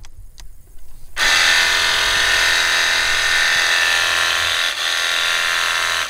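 Battery-powered VEVOR cordless pressure washer starting about a second in and running steadily with a round rinsing nozzle fitted. Its electric pump gives a whine over the hiss of the water spray, and both cut off suddenly at the end.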